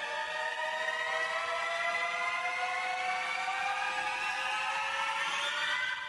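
A sustained, siren-like pitched whine with several overtones, gliding slowly and steadily upward in pitch.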